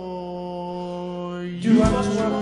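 A male voice holds one long sung note over a soft backing, then the band comes back in with a loud drum hit about a second and a half in.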